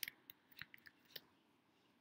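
Faint clicks of computer keyboard keys being typed, about six strokes in the first second or so, then they stop.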